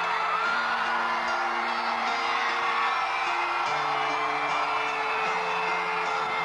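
A live band playing sustained chords that change every second or two, with whoops and shouts from the audience over the music.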